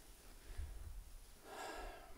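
A man's faint deep breath, heard as a soft breath noise, strongest near the end.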